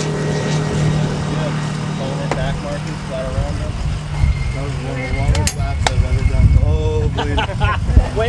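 A motor vehicle's engine running steadily close by, under people talking; about five seconds in the steady note gives way to a deeper, rougher rumble that grows louder toward the end.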